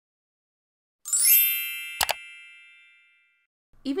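Intro logo sound effect: a bright chime sweeps upward about a second in, then rings on as several held tones that fade away over about two seconds, with a short sharp pop about two seconds in. A woman's voice begins right at the end.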